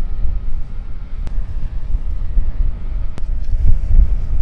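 Wind buffeting the microphone: a loud, uneven low rumble, with two faint clicks.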